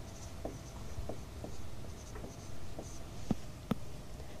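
Handwriting: a writing implement scratching out short strokes, with two sharp taps near the end.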